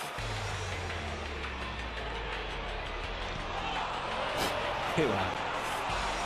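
Football stadium crowd noise under a TV broadcast, steady throughout, with background music's low steady notes underneath in the first half. A brief sharp click about four and a half seconds in.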